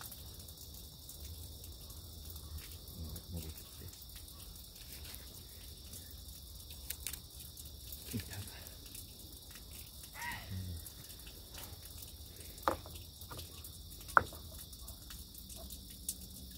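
Quiet water sounds of a stand-up paddleboard being paddled, with a steady high insect drone behind. Two sharp knocks come in the second half; the later one is the loudest.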